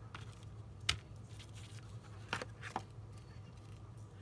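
Faint handling of Stampin' Dimensionals foam adhesive pieces: light clicks and rustles of paper and plastic as pieces are picked from a clear plastic box and a backing is peeled off. There are three distinct clicks, one about a second in and two around two and a half seconds, over a steady low hum.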